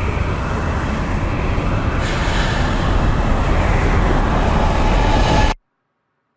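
Loud, dense rumbling drone of horror-trailer sound design, building about two seconds in, then cutting off abruptly to silence near the end.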